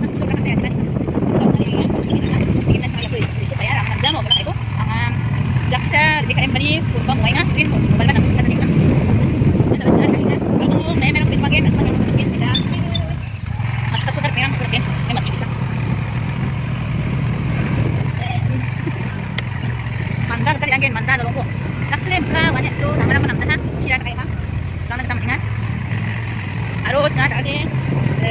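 Motorcycle engine running with a steady low hum while riding along a road, with voices talking over it.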